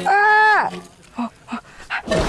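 A single loud, drawn-out pitched cry lasting about two-thirds of a second, falling in pitch as it ends, followed by a few faint clicks.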